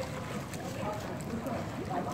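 Water splashing and lapping from a swimmer's strokes in a swimming pool, with voices of other people in the pool in the background.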